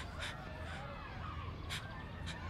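Outdoor birds calling: three short, harsh calls about a quarter, three quarters and one and three quarter seconds in, with thin chirps between them, over a steady low rumble.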